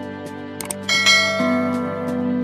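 Intro music of steady held tones; just before a second in come a couple of short clicks, then a bright bell-like chime rings out over the music.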